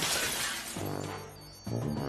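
A crash of breaking glass dying away, followed by film-score music with two low notes entering one after the other.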